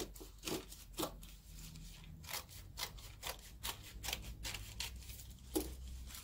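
Scissors snipping through a folded stack of white paper, cutting out paper skirt pieces for a shaman's spirit staff: a quick, irregular run of short snips, closest together in the middle, the loudest near the end.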